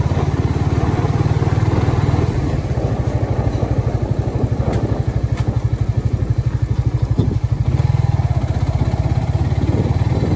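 Suzuki GSX-R150's single-cylinder engine running as the motorcycle is ridden along, recorded from on the bike, with a low, steady throbbing beat. The note eases off slightly in the middle and picks up again about eight seconds in.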